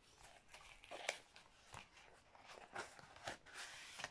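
Faint rustling of a paper sewing-pattern envelope and booklet being handled and slid apart, with a few soft ticks.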